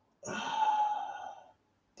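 A man's audible breath into a close studio microphone, lasting just over a second.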